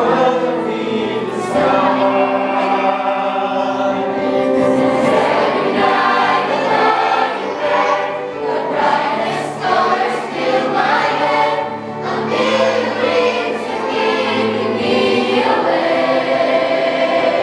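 A mixed choir of male and female voices singing together in several parts, with long held notes.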